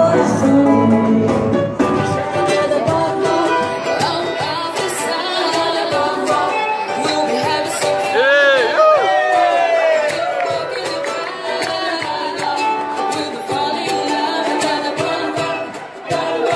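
Music: voices singing over instrumental accompaniment.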